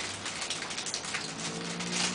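Plastic pouch of shisha tobacco crinkling as it is handled and unwrapped, a dense, continuous crackle.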